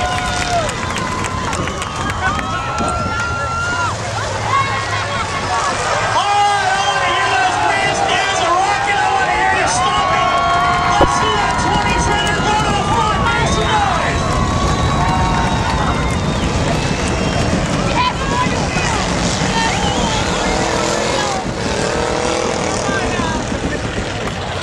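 Engines of the figure-8 race cars towing trailers, running and revving up and down around the dirt track, over the steady chatter of a grandstand crowd.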